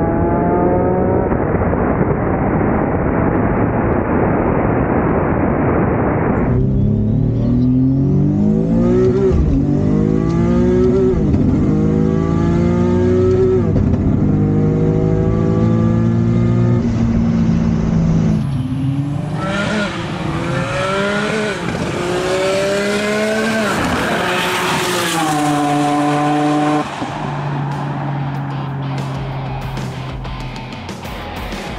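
Turbocharged Nissan VQ V6 in a 240SX at full throttle, revving up and shifting through the gears of its dual-clutch transmission, the pitch climbing and dropping back at each shift. Near the end the revs fall away and settle at a steady lower note as the car slows.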